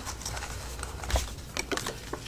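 Quiet rustling and a few small ticks of paper being handled: a folded book-page envelope turned in the hands while a postcard is fitted into its back pocket.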